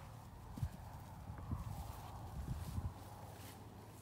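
A sheep's hooves knocking and scuffing on the pen floor as it is let go and moves off: a few irregular soft thumps over a low steady hum.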